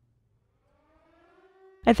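Near silence between narration lines, with a very faint rising tone in the middle, then a woman's voice starting at the end.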